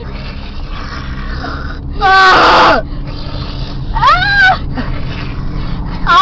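High-pitched wailing cries from a person's voice, each falling in pitch, made as mock sex noises: one long cry about two seconds in, then two shorter ones about four seconds in, over a steady low hum.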